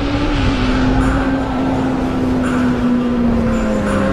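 Motorcycle engine sound effect holding high revs, its pitch slowly sinking across the few seconds.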